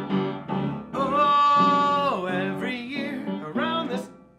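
Upright piano played in repeated chords, joined about a second in by a long held sung note and then a curving sung line over the chords; the playing stops abruptly at the end.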